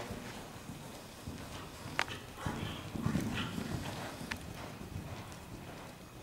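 Horse's hoofbeats on the soft sand footing of an indoor riding arena as it is ridden around, with a sharp click about two seconds in and a fainter one a little after four seconds.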